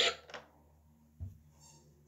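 Running water stops abruptly right at the start, leaving near silence with one soft low knock about a second in.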